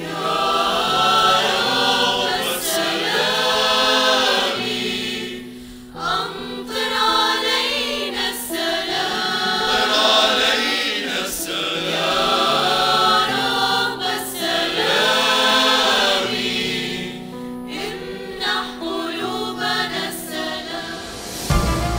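Church choir singing a hymn in long, sustained phrases over long-held low notes, with a brief pause between phrases about six seconds in.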